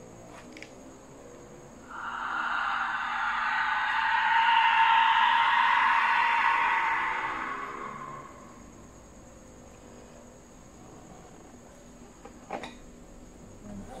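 A skull-shaped pre-Hispanic death whistle blown in one long, shrill, hissing shriek. It starts about two seconds in, swells to its loudest midway, then fades out about six seconds later.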